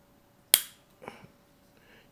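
A sharp plastic snap as the cleaned wheel and spindle are popped back into the Eufy RoboVac 11s front caster housing, about half a second in, followed by a fainter click. The snap is the sign that the wheel is seated.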